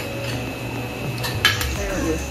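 Metal spoons and forks clinking and scraping against plates and a glass serving dish as food is dished out, with two sharp clinks close together a little past the middle.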